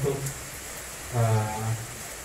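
A man's voice through a microphone: a short syllable at the start, then a drawn-out, steady-pitched hesitation vowel lasting about half a second between phrases.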